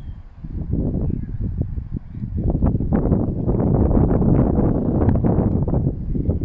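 Wind blowing across the microphone: a low, gusty noise that grows louder about two and a half seconds in.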